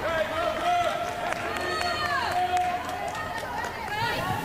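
High voices shouting long calls on a football pitch, one slide falling into a held note, with a few sharp claps in between, over stadium background noise.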